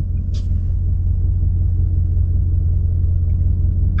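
2023 Ford Mustang GT's 5.0-litre V8 idling, heard inside the cabin as a steady low rumble.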